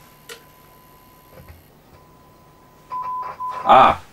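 A steady oscillator test tone of about 1 kHz playing faintly through the stereogram's amplifier and speaker, with a single click early on. About three seconds in the tone jumps much louder, drops out briefly and comes back as a control is turned, a crackly cutting-out taken for a dirty volume control.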